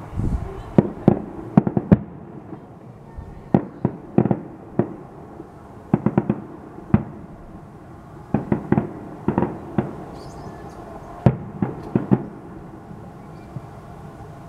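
Aerial firework shells bursting in the sky, sharp bangs coming in quick clusters of three to six every one to two seconds.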